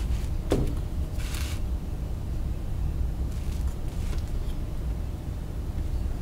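Handling noise from a webcam being moved by hand close to a 3D printer's controller board. A steady low rumble runs throughout, with a sharp knock about half a second in, a brief rustle just after, and a few faint ticks later.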